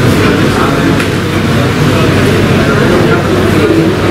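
Steady hubbub of many people talking at once in a crowded meeting room, no single voice clear, over a steady low hum.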